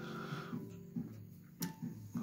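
Background guitar music plays steadily. About one and a half seconds in, a single sharp click sounds as a miniature's clear plastic base is set down on a wooden surface.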